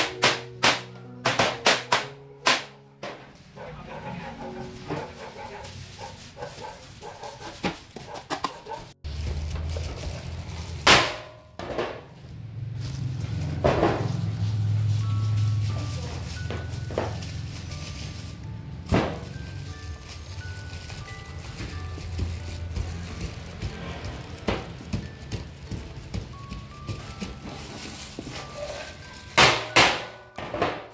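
Sharp knocks of a plastic mooncake mould struck against a stainless steel table to release pressed sticky rice cakes: a quick run of about seven in the first three seconds, a few single knocks later and another cluster near the end. Background music plays throughout.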